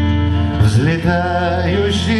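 Live acoustic band music: acoustic guitar over a steady low bass note, and about half a second in a man's voice comes in with a sliding melodic line without words.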